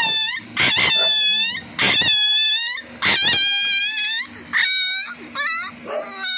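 Three-week-old Siberian husky puppy crying out in a string of about five or six long, high-pitched wails, several bending down in pitch at the end. The owner says he cries out like this when he poops.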